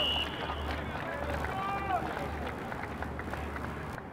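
The tail of a referee's whistle blast, cut off a moment in, then scattered shouts and calls from players and spectators at an outdoor football game.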